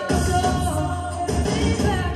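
A woman singing an uptempo pop song live into a microphone over backing music.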